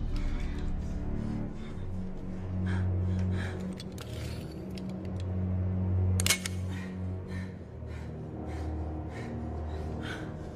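Tense, low film score with long held droning tones. A single sharp click cuts through about six seconds in.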